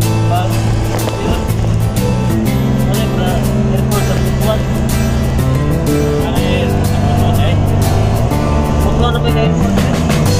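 Music with a steady beat and a held bass line that changes notes every second or two.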